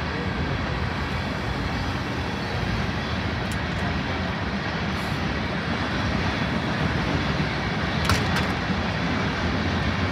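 Manifest freight train of tank cars rolling past: a steady rumble of wheels on rail, with two sharp clicks about eight seconds in.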